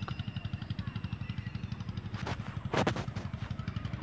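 A low, rapid, steady throb of a running motor in the background, with a few short clicks a little past the middle.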